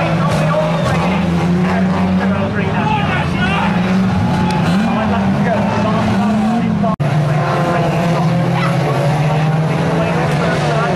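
Several banger-racing cars' engines running and revving together around the track, their pitch rising and falling. The sound cuts out for an instant about seven seconds in, then the engines carry on.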